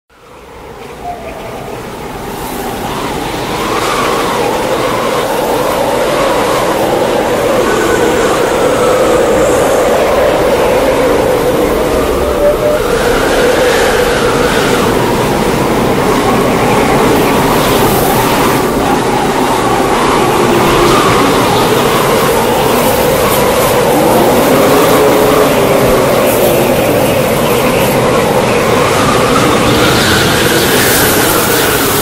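Steady road and engine noise heard inside a car driving along a snow-covered highway, fading in over the first few seconds and then holding steady.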